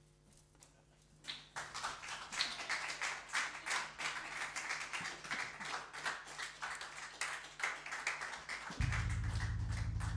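Small audience clapping after a song ends, the applause starting about a second and a half in. Near the end a low steady hum comes in.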